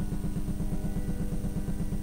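Pipe organ holding a sustained chord of several notes, steady in pitch, with a fast pulsing in the bass.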